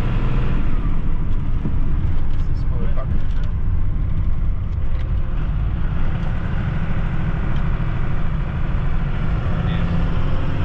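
5.9 12-valve Cummins turbo diesel of a 2nd-gen Dodge Ram, fitted with fresh 3K governor springs, running steadily as the truck drives, heard from inside the cab as a deep drone.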